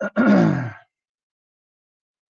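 A man clearing his throat once, a short rough sound under a second long that falls in pitch.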